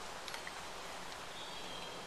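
Quiet, steady open-air background noise, with a couple of faint light ticks about a third of a second in.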